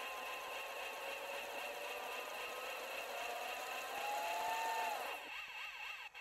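Faint electronic whirring of an outro logo sound effect, with steady thin tones. A tone slowly rises in the middle, and a quick warbling zigzag comes near the end before it cuts off.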